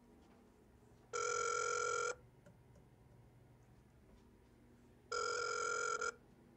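Ringback tone of an unanswered phone call, played through a phone's speakerphone: two one-second pulses of a steady, buzzy tone, four seconds apart.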